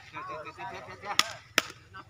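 Two sharp smacks of a sepak takraw ball, a bit under half a second apart, about a second in, with faint calling voices before them.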